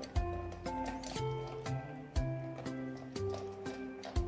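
Background music: melodic notes changing about every half second over a steady beat, with a deep drum hit about every two seconds.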